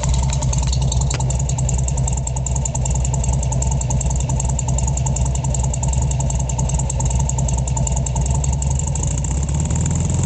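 Dual-carbureted 1600cc air-cooled flat-four engine of a Porsche 356 Speedster replica idling steadily, with an even beat.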